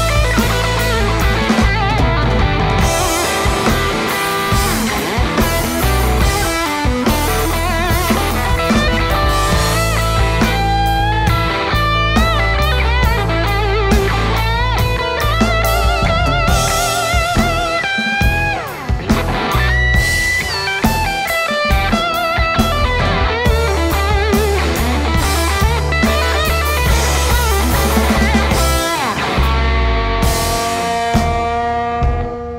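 Blues-rock instrumental break: an electric guitar solo with fast runs and wavering, bent held notes over bass guitar and a drum kit.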